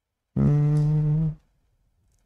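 A man's voice: one drawn-out hesitation hum, about a second long, held on a steady low pitch.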